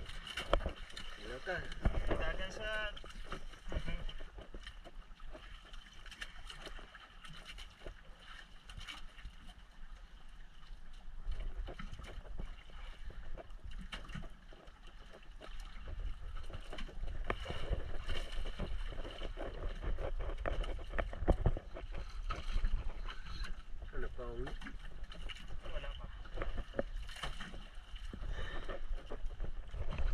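Wind rumbling on the microphone and sea water washing around a small outrigger boat, growing louder about halfway through. Brief bursts of voices come near the start and again later.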